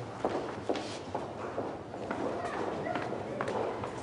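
Footsteps of several people hurrying along a hard floor, with indistinct chatter in the background.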